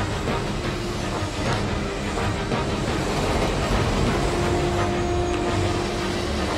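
A subway train running through an underground station, a dense low noise, mixed with background music; a held steady tone comes in about four seconds in.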